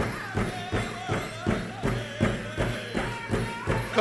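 Drum beaten in a steady, even dance rhythm of just under three strokes a second for powwow dancing, with faint singing over it.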